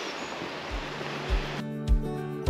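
Steady rushing water noise from a small creek, with background music coming in over it: a low, even beat starts under a second in, and acoustic guitar joins near the end.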